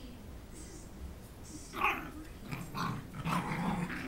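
Coton de Tulear puppies growling in play: one short burst a little under two seconds in, then a run of growls through the last second and a half.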